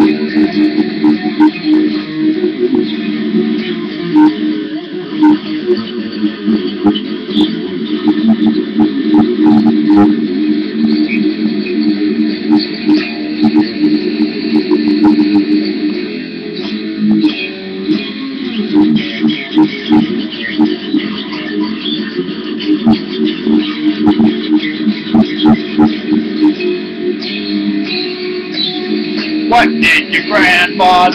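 Electric guitar being played solo, a continuous run of picked notes.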